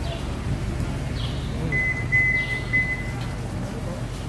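Steady low rumble of market ambience, with a thin high steady tone lasting about a second and a half in the middle and a couple of brief high chirps.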